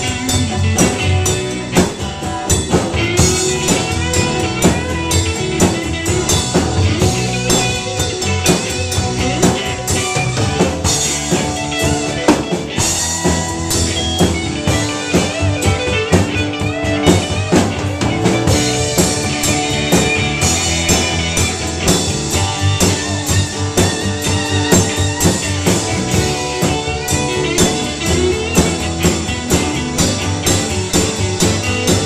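Live band playing: a drum kit keeps a steady beat under acoustic and electric guitars.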